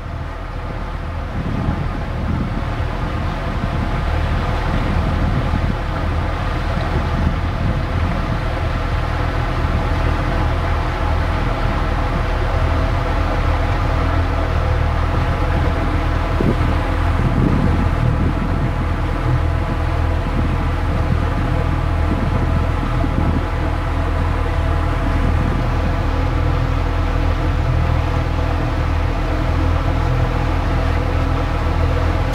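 Small tour boat's engine running steadily under way, one even pitch that grows a little louder over the first few seconds and then holds.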